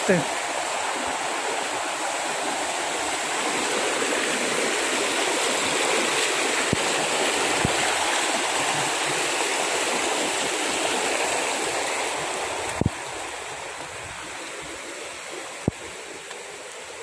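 A shallow stream rushing steadily over rocks and small cascades. It grows lower for the last few seconds, with a couple of brief knocks near the end.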